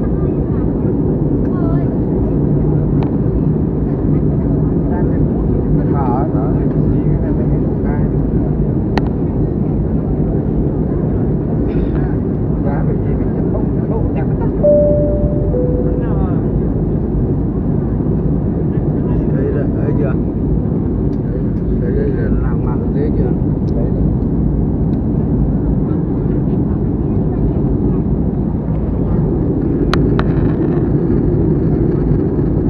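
Steady jet airliner cabin noise, the low rumble of the Airbus A320-family's engines and airflow heard from a window seat during the descent to landing. About halfway through, a two-note falling cabin chime sounds once.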